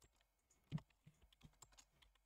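Faint computer keyboard typing: a scatter of soft keystrokes, one a little louder about three quarters of a second in, then a quick run of lighter ones.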